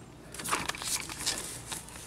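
Soft rustling and scraping of a hand working along seat belt webbing and plastic interior trim close to the microphone, with a few light clicks.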